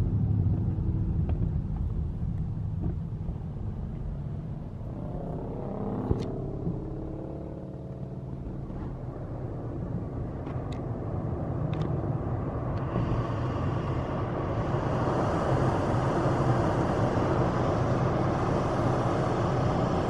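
Road noise inside a moving car: a steady low rumble from engine and tyres, with a broader hiss of tyre and road noise growing louder about two-thirds of the way in. A few faint sharp clicks sound in the middle.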